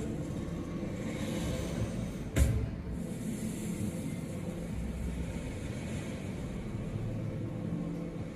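Steady low rumble of room ambience, with faint steady tones and one sharp knock about two and a half seconds in.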